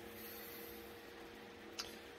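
Faint room tone with a steady low hum, and a brief tick just before the end.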